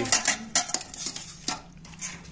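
Steel ladle clinking against a stainless steel bowl and plate as food is dished out: a few sharp metallic clinks, with one more about a second and a half in.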